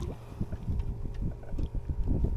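Wind rumbling on the microphone over water lapping against a small boat's hull.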